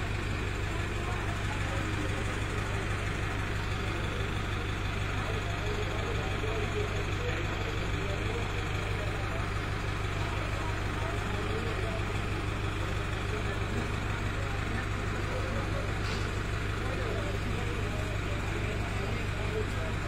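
Mobile crane's engine running steadily at idle, a low, even hum, with faint voices in the background.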